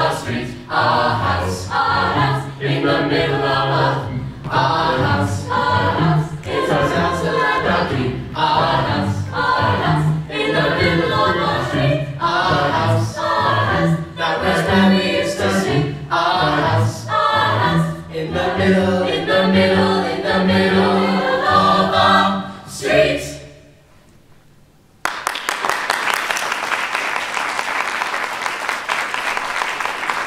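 Youth choir singing in several parts, the piece ending about 23 seconds in. After a second or so of near quiet, steady applause follows.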